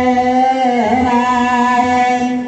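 Ethiopian Orthodox wereb chant: chanters' voices holding one long note, wavering down briefly about a second in before settling again.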